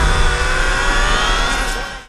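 A film-soundtrack vehicle engine running and revving over a heavy low rumble, fading out at the very end.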